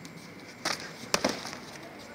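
Taekwondo sparring kicks striking a padded chest protector: a slap a little after the start, then a sharp crack and a smaller one in quick succession about half a second later. The strikes are the red fighter's kicks landing on the blue fighter.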